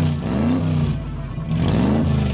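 Race car engine revving hard under the throttle, its pitch climbing in repeated surges, one about half a second in and another starting near the end.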